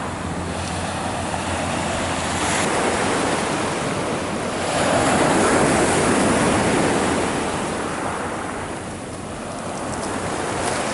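Surf washing onto a pebble beach: a steady rush that swells about halfway through and eases near the end.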